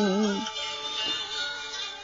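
A woman's chanted poetry recitation (ngâm thơ) holds a wavering note that ends about half a second in, leaving soft instrumental accompaniment for the rest.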